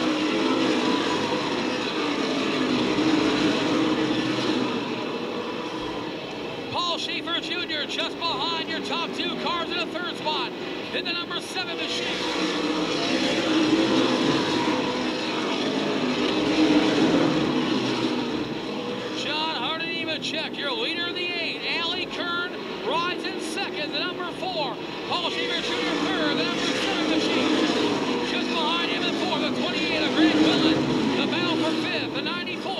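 Pack of asphalt late model race cars' V8 engines running at racing speed around a short oval, the sound swelling and fading as the field laps past.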